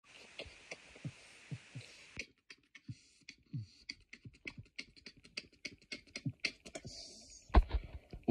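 Mouth beatboxing: low thumps that drop in pitch, like a kick drum, then a quicker run of dry clicks and short hissy snare-like sounds, about four or five a second, from about three seconds in. A louder, sharper hit comes near the end.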